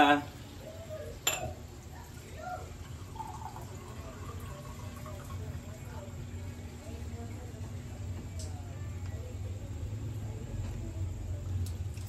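Kitchen sounds as cups of water are added to a wok: water poured from a plastic cup into the pan, a sharp clink about a second in, then a low steady hum with faint murmured voices while the cup is refilled at the sink.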